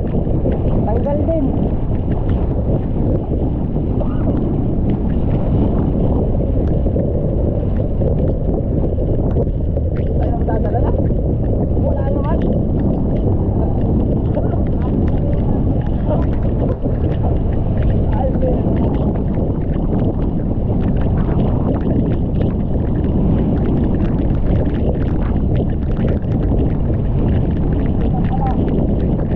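Outrigger fishing boat under way on rough sea: a steady, loud rumble of wind buffeting the microphone and water rushing and splashing against the hull and outrigger floats. Faint voices come through now and then.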